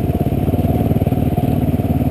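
Dual-sport motorcycle engine running steadily at low speed, an even, close pulsing while riding through shallow river water.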